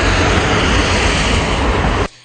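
Loud, steady rushing roar of open-air location sound, heaviest in the low end, cutting off abruptly at the end.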